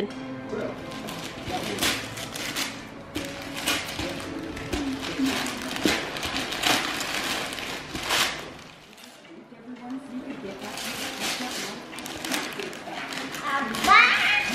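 Gift wrapping paper being torn and crinkled by hand off a box, in a run of repeated rips with a short lull about two-thirds of the way through.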